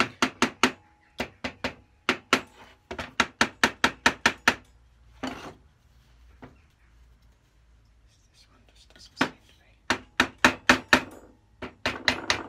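A block of wood knocking on a metal Lewin combination plane, driving a stiff, binding part together along its rods. The taps come in runs of about five a second, with a pause of a few seconds in the middle.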